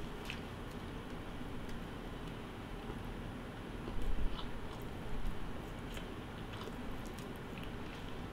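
A person chewing a mouthful of soft white-bread peanut butter sandwich, with quiet wet mouth sounds and small clicks. It gets a little louder about four seconds in.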